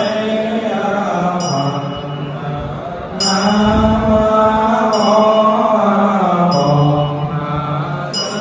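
Buddhist monks chanting together in long, slowly gliding notes, reciting the Buddha's name. A short, high ringing strike sounds about every second and a half.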